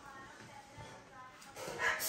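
A dog whining faintly, two short high whines about a second apart.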